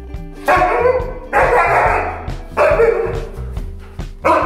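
Husky vocalizing in three drawn-out, loud calls of about a second each, a dog's 'pep talk', over background music.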